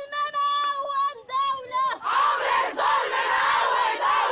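A woman's high voice leads a protest chant in long held shouts. About halfway through, a crowd of women shouts back together.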